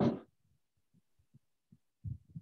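The end of a spoken word, then near silence broken by three or four faint low thumps.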